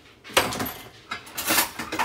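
Two short bursts of kitchenware handling noise, about a second apart.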